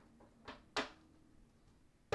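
Tarot card deck being handled in the hands: two soft clicks of the cards, about a third of a second apart, early in the first second.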